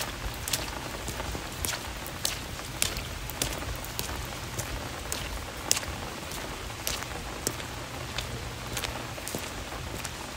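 Steady rain falling, an even hiss with irregular sharp taps of single drops striking close by, about one or two a second.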